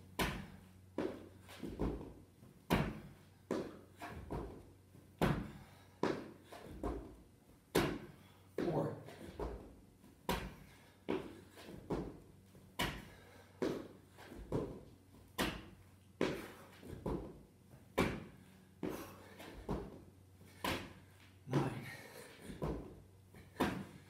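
A person doing burpees on rubber gym flooring: repeated thuds and slaps of hands and feet landing, about one to two a second, with hard breathing between them.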